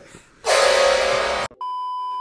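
Edited-in sound effects: about a second of a loud, steady, buzzy sound with many overtones that cuts off abruptly, then a steady high beep, the test-pattern tone of TV colour bars.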